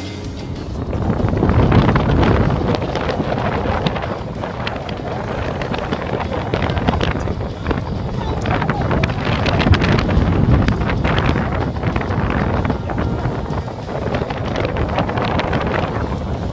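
Wind buffeting the camera microphone, a loud, uneven low rumble, with indistinct voices behind it.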